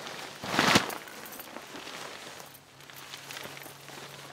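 Ripstop tent rainfly being thrown over a tent: a loud swish of fabric about half a second in, then softer rustling as the fly settles and is pulled into place.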